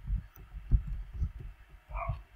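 Computer keyboard keystrokes picked up as an irregular run of dull, low thumps, several a second.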